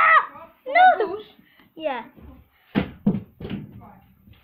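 Children's excited shouts and talk in a small room, with dull thuds of a partly filled plastic water bottle tumbling onto carpeted stairs after a flip.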